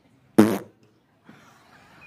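A single short, loud vocal puff close into a handheld microphone about half a second in, with a popping onset, amid otherwise low background.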